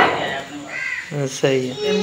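A few short voice-like calls without words, one arching up and down about a second in.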